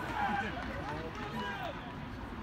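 Several voices calling out at once across a soccer field, overlapping one another, over a steady low rumble.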